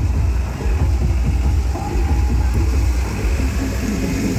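Light truck's engine running at walking pace close by, a loud, steady low rumble.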